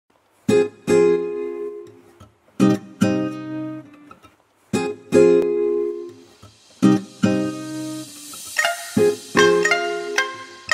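Background music of strummed acoustic guitar: pairs of chords struck about every two seconds, each left to ring and fade, with higher picked notes joining near the end.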